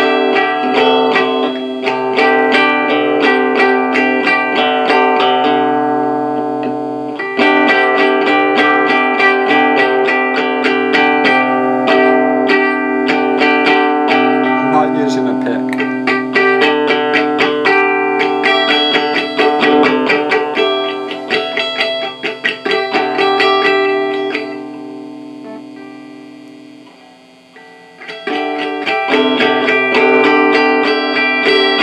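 Electric guitar played through an amplifier by a beginner, strumming ringing chords over and over. The sound fades away about three-quarters of the way through, then the strumming starts again near the end.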